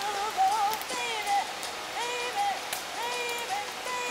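Campfire crackling and popping as the flames burn. Over it comes a series of short, high, whistle-like notes, several rising and then holding steady, whose source is unclear.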